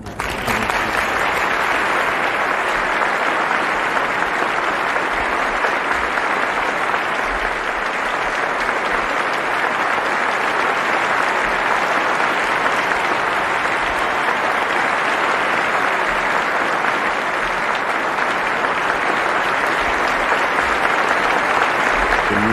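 A large theatre audience applauding, a standing ovation that starts abruptly and holds steady and dense throughout.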